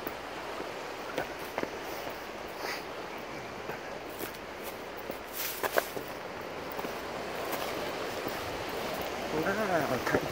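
Steady wash of sea surf breaking on a rocky shore, with scattered footsteps and scrapes on rock. A man's voice starts near the end, exclaiming "wow".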